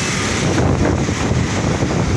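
Wind noise on the microphone over the steady rumble of a moving vehicle travelling along a city road.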